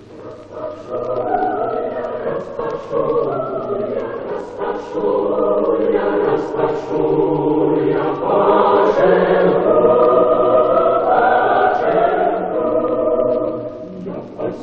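A choir singing slow, long-held notes, swelling louder in the second half.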